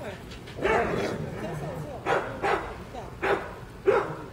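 A dog barking about five times, in short separate barks spread across the few seconds.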